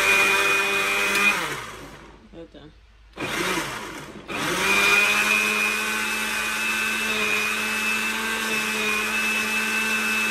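Master Chef countertop blender motor running on a jar packed with spinach, cucumber, ginger and pineapple. About a second in it is switched off and spins down in falling pitch, gives one short burst, then is switched back on near the middle, rises to speed and runs steadily.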